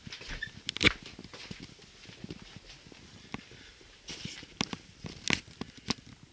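Scattered light knocks, clicks and rustles of someone moving about and handling things, the loudest a sharp knock about a second in.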